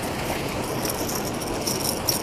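Steady wash of water rushing out of a spillway, with a fast, dry rattling ticking that starts about a second in as a hooked crappie is reeled in on a baitcasting reel.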